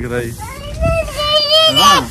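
A toddler's high-pitched voice: one long held call from about half a second in, bending up in pitch near the end.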